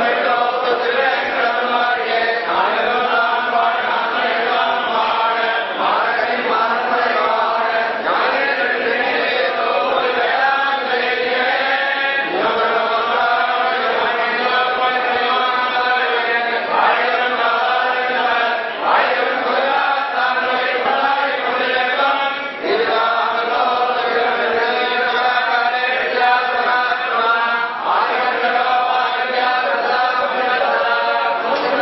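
Several voices chanting a Sri Vaishnava liturgical recitation together, continuous and steady, during temple worship.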